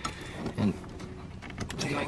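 Faint clicks and handling of plastic and rubber as the yellow wiring connector is worked loose from a Nissan 300ZX's idle air control valve among the engine-bay hoses.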